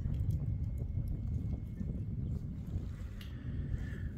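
Wind buffeting the microphone: an uneven low rumble, with a few faint ticks.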